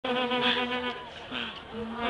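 Vuvuzela blown in one held note. It breaks off about a second in and starts again near the end.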